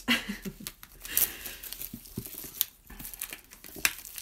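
Paper and plastic album packaging crinkling and rustling as it is handled and opened, in irregular crackles, after a short laugh at the start.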